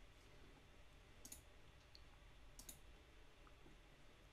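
Near silence with two faint computer mouse clicks, about a second and a half apart, as sketch lines are picked for dimensioning.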